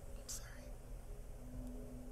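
A short breath, a quick intake of air about a third of a second in, then a pause with a faint steady hum behind it.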